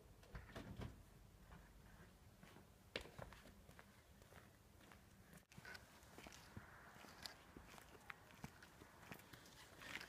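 Near silence with faint, irregular footsteps on paving and a few soft clicks.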